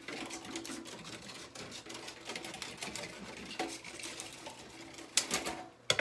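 Scissors cutting a thin plastic sheet from milk packaging into a round shape: a steady run of small, rapid snips and crinkles, with a few louder snips about five seconds in.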